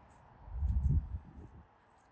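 A brief low rumble on the microphone about half a second in, lasting well under a second, from wind or handling as the camera is carried outdoors.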